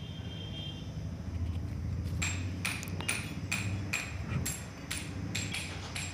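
Tractor's hazard-warning indicator flasher clicking over a steady low hum, starting about two seconds in and going on evenly at two to three clicks a second.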